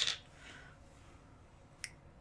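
Makeup being handled: a short, soft rustle right at the start, then a single sharp small click near the end.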